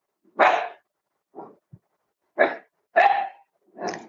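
A dog barking several short, separate barks.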